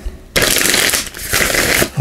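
A deck of Messenger Oracle cards being riffle-shuffled by hand: a quick rippling run of cards falling together starting about a third of a second in, then a second run after a brief break about a second in.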